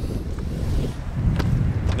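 Wind buffeting the microphone on an open boat, a low rumble that swells in the middle, with one sharp click about one and a half seconds in.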